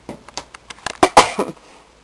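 Light handling noise: several sharp clicks and knocks, with a louder short throat sound a little after one second in.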